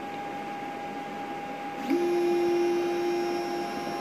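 Creality CR-X 3D printer running, with a steady high hum throughout. About halfway through, its stepper motors start a travel move, a steady pitched buzz as the print head moves back toward the prime tower after the filament swap.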